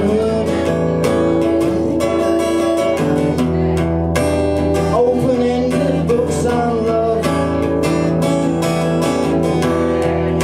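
Man singing live to his own strummed acoustic guitar, the strokes falling in a steady rhythm under the vocal line.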